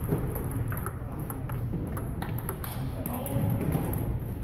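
Table tennis rally: the celluloid ball clicking sharply off paddles and table at irregular intervals, echoing in a large gym hall, over a murmur of voices.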